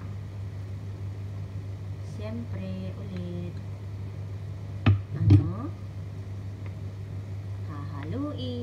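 A wooden spoon knocking twice on the rim of a frying pan, about five seconds in, as cream is knocked off it into the pan, over a steady low hum.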